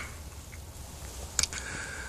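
Quiet background with a steady low hum and one short click about a second and a half in.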